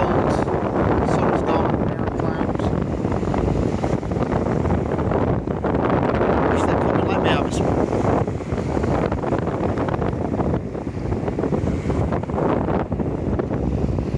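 Strong wind buffeting the phone microphone, a steady loud rumble, with waves breaking on the sea shore underneath.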